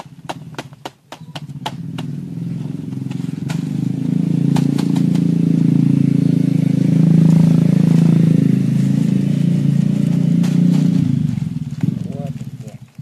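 A motor vehicle engine, growing louder over several seconds and fading away near the end, as when it passes by. A few sharp clicks come in the first two seconds.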